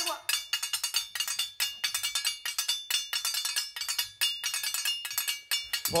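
Hand-held metal folk percussion struck in a quick, steady rhythm of about five ringing strokes a second, opening a traditional folk song. A short gliding vocal call sounds right at the start.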